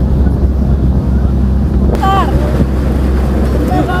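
Passenger boat's engine running with a steady low drone, with wind on the microphone.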